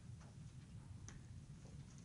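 Near silence: room tone with a low hum and a couple of faint clicks.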